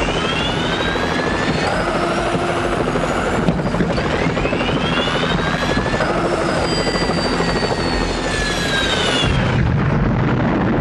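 Helicopter in flight, its engine and rotor running steadily and loud, with a whine whose pitch sweeps down and up several times. A deeper rumble comes in near the end.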